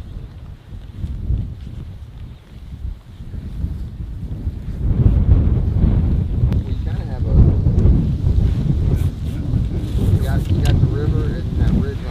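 Wind buffeting the microphone outdoors, a low rumble that gets louder about five seconds in and stays strong.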